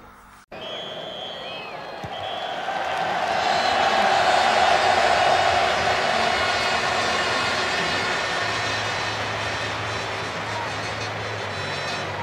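End-card music and sound effects: a couple of short tones, then a rushing swell that builds for about four seconds and slowly fades, with a low hum coming in near the end.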